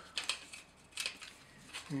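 A few light plastic clicks and taps as a flat blade prises the underframe of a plastic OO gauge bogie bolster wagon model apart.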